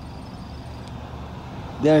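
A steady low rumble of background noise in a pause between words, with a man's voice starting again near the end.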